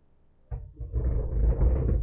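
A click about half a second in, then about a second of loud low rumbling and rustling from a handheld camera being moved and rubbed.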